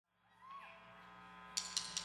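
Faint steady hum from a rock band's stage amplifiers, then three or four sharp ticks about a fifth of a second apart near the end: a drummer's count-in just before the song starts.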